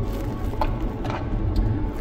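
Steady low rumble of road and engine noise inside a moving car's cabin, with faint music underneath.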